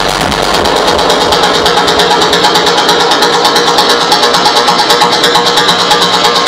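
Techno played loud on a club sound system, in a breakdown: the kick drum drops out, leaving sustained droning tones under a fast, evenly repeating roll of short percussive hits.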